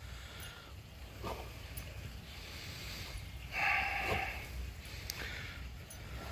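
A dog rubbing and rolling its face in the grass to get rid of skunk spray, with faint scuffing and sniffing. A short pitched sound comes a little past halfway.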